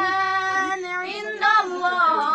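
A woman's voice chanting an Arabic devotional supplication in a slow, melodic style: one long held note for about a second, then a short break and a new note near the end.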